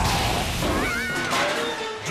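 Cartoon explosion sound effect at the start over a music score, followed about a second in by a short, wavering high-pitched cry.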